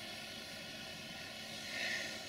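Faint, steady room noise: an even hiss with no distinct event.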